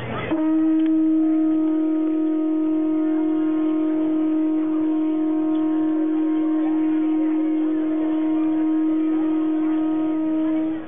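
A conch shell trumpet blown in one long, steady note held for about ten seconds, starting just after the opening and cutting off near the end.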